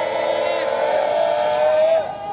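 A brass band holding the final chord of a university cheer song, several steady notes sustained together and cut off sharply at the end.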